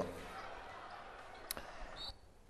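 Faint sports-hall sound from a basketball game, with one sharp knock about one and a half seconds in.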